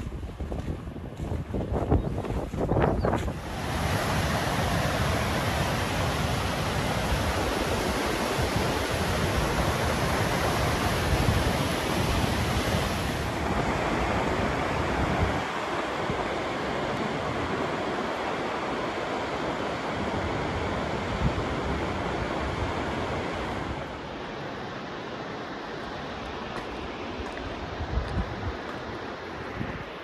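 Steady rushing roar of waterfalls, swelling about three seconds in and easing somewhat later on. Wind buffets the microphone at the start.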